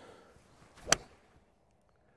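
Callaway Paradym Ai Smoke 7-hybrid striking a golf ball off the tee: one sharp crack about a second in.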